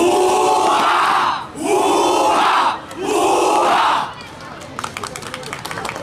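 A squad of boys shouting three loud calls in unison, each a little over a second long. The shouts are followed by a quieter patter of many sharp clicks near the end.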